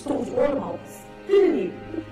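A person's loud wordless cries of distress, two strong ones about half a second and a second and a half in, each falling in pitch, over background music with sustained notes.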